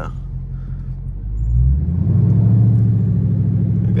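Dodge Scat Pack's 392 HEMI V8 heard from inside the cabin, a low rumble at crawling speed that gets louder and rises in pitch about one and a half seconds in as the car picks up speed, then holds steady.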